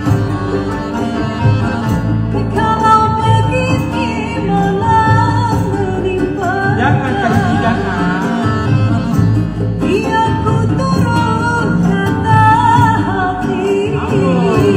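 Live Malay song performed by a small band with accordion and a plucked lute, with singing whose held notes waver and bend in pitch, most strongly about halfway through.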